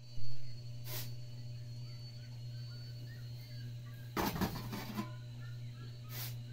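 A shovel scraping and scooping through a pile of loose ground feed, a rush of grainy noise about four seconds in, over a steady low hum. There is a loud knock just after the start.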